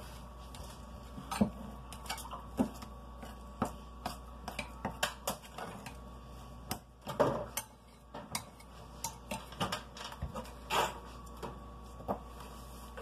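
A utensil clinking and scraping against a glass mixing bowl as thick frosting is stirred by hand, in irregular knocks and scrapes with a busier cluster about seven seconds in.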